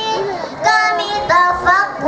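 Children singing into a microphone, a girl's voice leading, in sung phrases that rise and fall in pitch.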